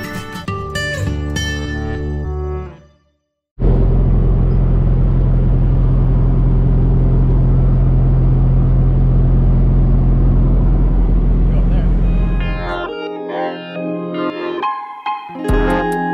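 Guitar music fades out, then about nine seconds of loud, steady low rumble and hiss with a constant hum, from the boat's own soundtrack. Plucked guitar music returns near the end.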